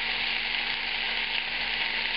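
Chunks of onion and tomato sizzling in hot oil in a non-stick frying pan, a steady hiss.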